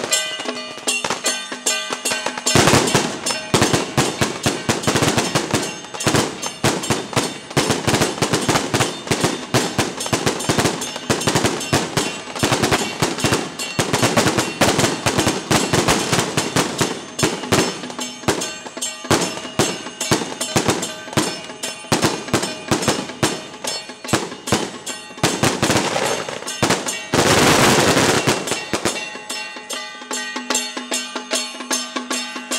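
Strings of firecrackers going off in long, rapid crackling runs, with a denser, louder burst near the end, over traditional procession drums and percussion.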